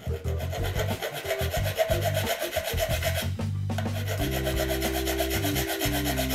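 Flat hand file rasping across the corner of a steel part of a Japanese plane (kanna), steady filing with a short pause about halfway through. Background music with a low bass line plays underneath.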